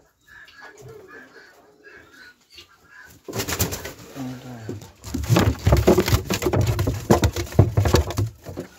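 Faint short bird calls repeat for the first few seconds. Then loud rustling of dry straw and scraping and knocking against a wooden nest box take over, strongest in the last three seconds.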